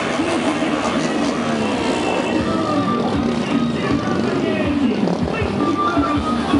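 Music with voices playing loudly from a trailer-mounted loudspeaker rig, over the engines of a motorcade of motorcycles and cars.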